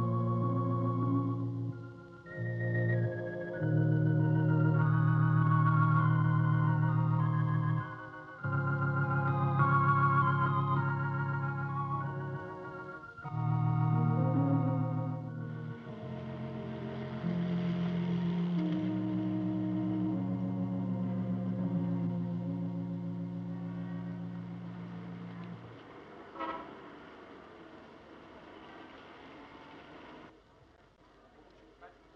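Church organ playing slow, sustained chords that change every few seconds, fading out near the end. A soft hiss of noise joins about halfway, and there is a single short knock shortly before the end.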